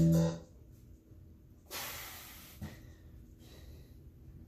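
A guitar-backed song ends with a held chord that cuts off about half a second in. Then, during pushups, a man breathes out in one long exhale lasting about a second, followed by a light knock.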